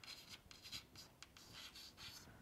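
Faint scratching of writing on a surface, a run of short quick strokes at about four a second.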